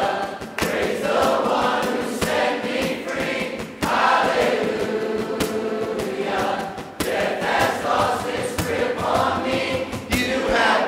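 A congregation singing a worship song together with a male worship leader, in sung phrases a few seconds long, over quiet acoustic guitar backing.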